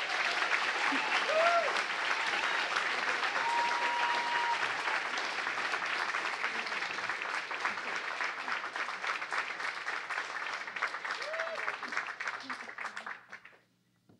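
Audience applauding steadily, the clapping fading out and stopping just before the end.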